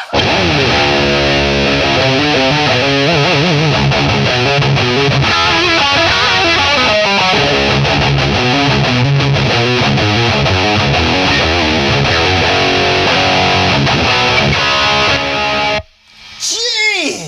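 An electric guitar played through an EVH 5150 III valve amp head turned all the way up into a Soldano 2x12 cabinet with Vintage 30 speakers: heavily distorted high-gain riffing, very loud. The playing stops abruptly just before the end.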